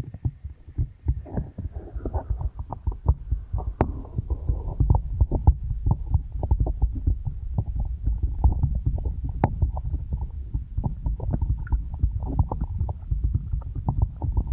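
Hands cupping and patting over a binaural microphone's silicone ears, heard right at the microphone as fast, muffled, deep thumps and rubbing, several a second.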